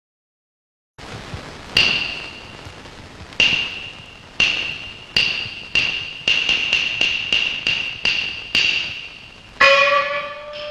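Chinese opera percussion on a film soundtrack: a small high-pitched metal instrument struck about a dozen times, each stroke ringing briefly. The strokes come slowly at first, speed up into a quick run in the middle, then slow again. A singing voice enters near the end.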